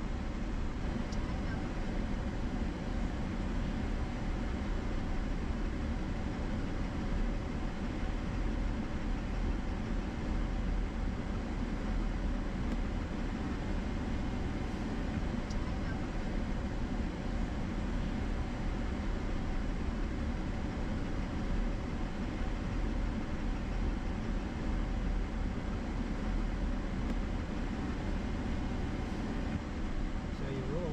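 Steady tyre and engine noise heard inside the cab of a Chevrolet Silverado pickup truck as it drives.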